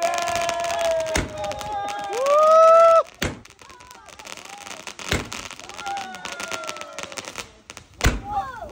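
Aerial fireworks going off, with sharp bangs about one, three and five seconds in, among long gliding whistling tones. The loudest of these rises sharply about two seconds in and stops abruptly a second later.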